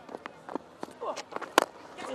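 A cricket bat strikes the ball with one sharp crack about one and a half seconds in, after a few fainter clicks and knocks.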